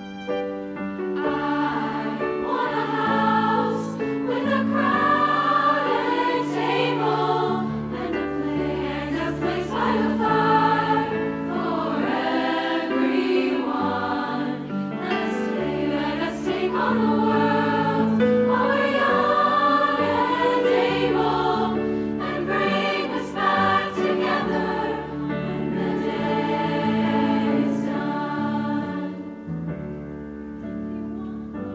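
A large choir singing in harmony over sustained low notes, the sound continuous, with a brief drop in level near the end.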